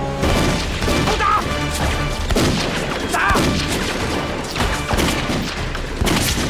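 Film gunfight sound effects: repeated rifle and pistol shots with heavy booms, over background music. Two short cries ring out, about one and three seconds in.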